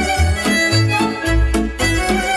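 Instrumental Romanian folk music: a fiddle melody with accordion over a bass line pulsing on the beat, about two beats a second.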